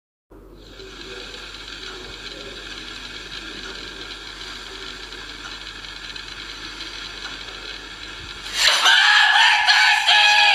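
A steady low hiss and hum, then about nine seconds in a loud, drawn-out high call held on one pitch.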